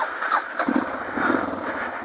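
Suzuki DR650 single-cylinder motorcycle engine running on a rocky trail. Its low, regular firing pulses come through clearly from about half a second in.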